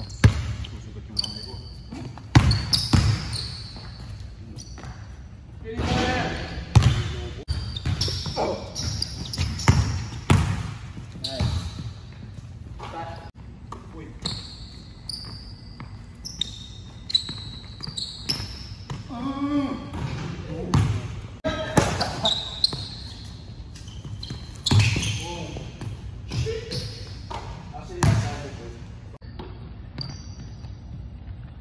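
A basketball bouncing on a hardwood gym floor, with irregular sharp bounces that ring in a large indoor hall.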